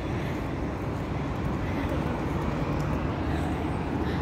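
Steady road-traffic noise, an even rumble without a break.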